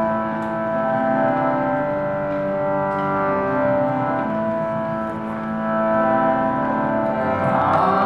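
Harmonium playing sustained chords, the notes changing every second or two. Near the end a male voice begins to chant over it.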